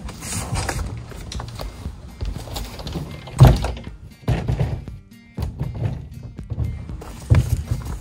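A plastic kayak being lifted off a wooden rack and set down on wooden deck boards: scraping and knocks, with one loud thunk about three and a half seconds in and a few more knocks as it is handled.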